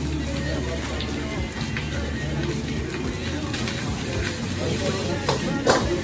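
Background music with steady low bass notes, under indistinct voices, with a few sharp knocks near the end.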